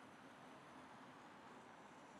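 Near silence: a faint, steady hiss with no distinct sounds.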